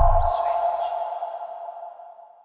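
Tail of a TV station's sound logo: a deep boom that dies out within the first half second and a ringing tone that fades away steadily, with a faint rising whoosh about a quarter of a second in.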